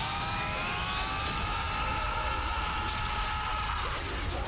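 An animated energy-charging sound effect. It opens with a rising whine that levels off after about a second into a steady held tone, over a low rumble.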